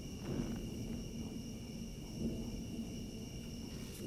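Faint, steady high trill of a night cricket chorus over a low rumble.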